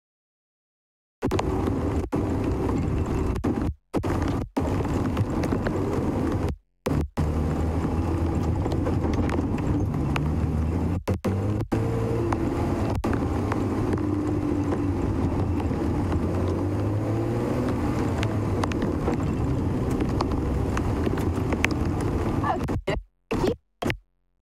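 Open safari vehicle's engine running as it drives along a rough dirt track, the engine note rising and falling. The sound cuts out to dead silence several times, with a long gap at the start, short gaps in the middle and more near the end, as the live stream's mobile signal drops out.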